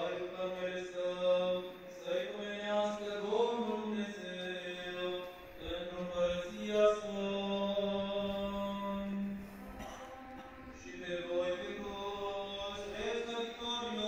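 Slow vocal chant in the manner of Orthodox church singing: long held notes that shift in pitch every second or two over a steady low drone, with a short pause about ten seconds in.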